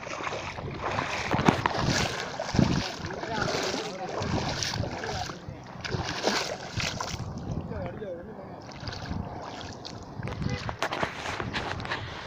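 Footsteps splashing through shallow water, with a few heavy thumps in the first few seconds, under indistinct voices talking.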